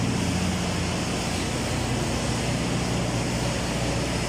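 Steady machine drone: a constant low hum with a broad hiss over it, holding an even level throughout.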